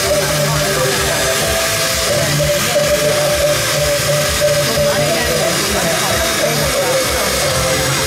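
Corded electric hand drill running steadily with its bit in a bucket of water, working a Bodhi seed.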